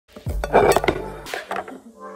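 Small hard objects being handled, clinking and knocking together several times, most of it in the first second, with a few lighter clinks after.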